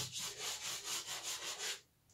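Soft pastel stick scratching across textured pastel paper in quick, even strokes, about five a second, laying in fur. The strokes stop shortly before the end.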